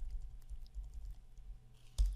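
Typing on a computer keyboard: a quick run of light, faint key clicks as a word is typed.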